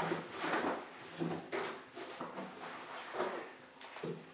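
Cloth towel rubbing and scuffing over the inside of a plastic dog-kennel shell in irregular strokes, with a few light knocks of the plastic.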